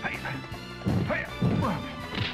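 Film score music under a kung fu sparring exchange, with two loud dubbed punch-and-block hit effects, about a second in and again half a second later, and fighters' shouts between them.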